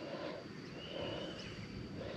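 Faint outdoor background with a distant bird giving thin, drawn-out whistles, one about a second in.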